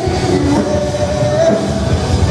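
Live rock band playing loud and dense: electric guitar, bass guitar and a pounding drum kit, with a held note that bends in pitch about halfway through.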